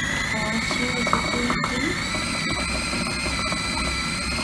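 Bosch food processor motor running at full speed, chopping raw fish fillet into paste for fish cakes. It is a steady high whine that climbs as the motor spins up in the first half-second, then holds level.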